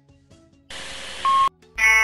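Alarm sound previews from the Chicco BebèCare app played on a smartphone. After a short silence comes a hissing burst of under a second that ends in a steady beep-like tone. Near the end a harsh, buzzing alarm tone starts: the 'School fire alarm' sound.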